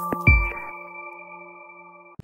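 Electronic logo jingle: a last hit with a low thump about a quarter second in, then a held chime-like chord that slowly fades out.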